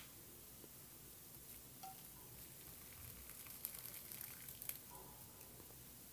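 Very faint sound of syrup being poured from a pan through a steel mesh strainer, with a cluster of light metallic ticks and drips about three and a half to five seconds in.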